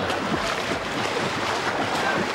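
Steady splashing and lapping of pool water stirred by a person swimming in an indoor swimming pool.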